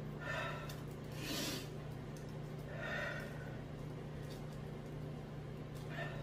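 A man breathing hard after eating an extremely hot sauce: three loud, rushing breaths in the first three seconds, over a steady low hum.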